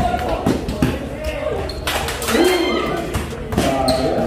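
A basketball being dribbled, bouncing repeatedly on a concrete court, with spectators' voices and chatter throughout.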